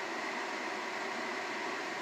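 Steady, even hiss inside a running car's cabin, with no change across the two seconds.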